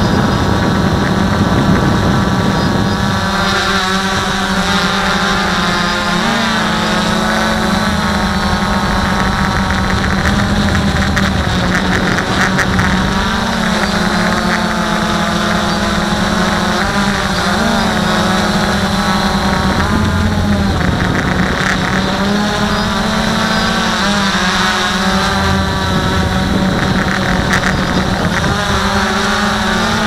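Walkera V303 Seeker quadcopter's motors and propellers running in flight, heard up close from its onboard camera. The pitch rises and falls every few seconds.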